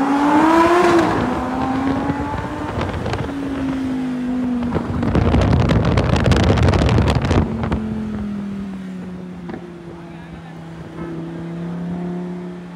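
Sports car engines accelerating side by side. An engine note climbs in pitch as it revs, drops back, and climbs again, with a stretch of loud rushing noise about five seconds in. Near the end the engine settles to a lower, steady note that slowly falls as it eases off.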